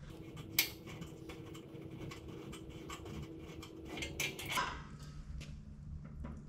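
Light clicks, taps and small rattles of 3D-printed plastic knobs being unscrewed and lifted off the bolts that hold a steel folding ladder to a canopy, with a sharper click about half a second in and a short run of clatter around four seconds in.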